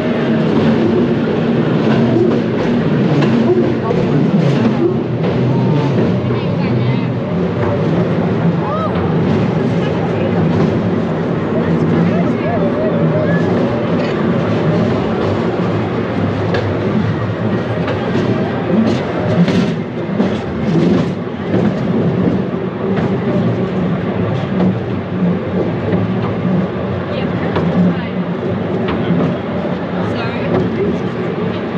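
The Scenic Railway's carriage rattling and clacking steadily as it runs down the steep incline, with people's voices over the running noise.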